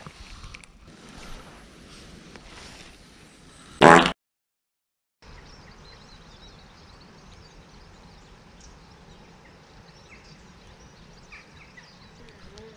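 Faint, steady outdoor background noise with no clear source. About four seconds in there is one short loud burst with a buzzy pitch, cut off by a second of dead silence, and then the even background noise comes back.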